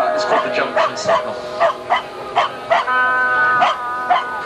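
Live band playing through a PA, recorded on a camcorder's microphone: drawn-out sustained notes under short, sharp percussive hits that come at an uneven pace.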